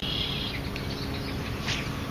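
Outdoor ambience at a pond: a steady low wind rumble on the microphone with a few faint bird chirps.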